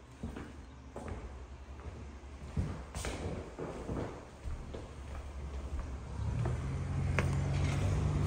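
Footsteps on a hard floor with a few knocks and clicks as someone walks through a room and out a door. About six seconds in, a steady low hum comes in.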